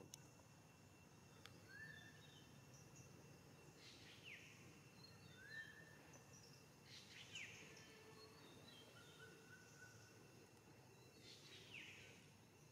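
Very faint outdoor ambience with small birds chirping now and then: short rising notes and quick falling whistles, one every few seconds, over a steady faint high whine.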